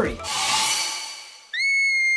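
An edited-in whoosh that swells and fades over about a second, then a high whistle sound effect that slides up briefly and holds one steady note for about half a second.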